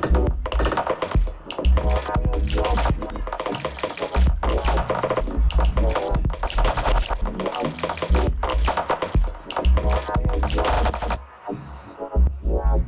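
Electronic dance music played live on laptop and modular synthesizer: deep bass hits in an uneven pattern under busy, bright upper layers. About eleven seconds in the highs drop out, leaving the bass and mid-range parts.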